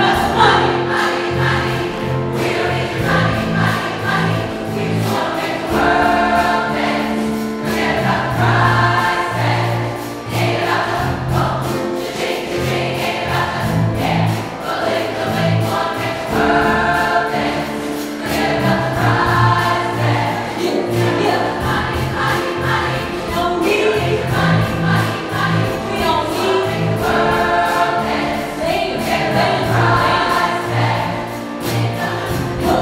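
Women's chorus singing a pop song in parts, with a soloist on a microphone and piano accompaniment keeping a steady beat.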